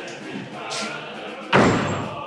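Heavy arched wooden church door shutting with a loud thud about one and a half seconds in, dying away quickly.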